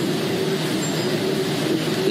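Steady engine or machinery noise: an even running hiss with a constant low hum.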